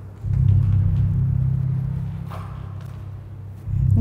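Low, steady droning rumble of dark background music, held low tones that swell up about a quarter second in, ease off, and swell again near the end.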